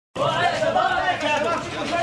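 Several men's voices talking and calling over one another at once, an excited babble of speech.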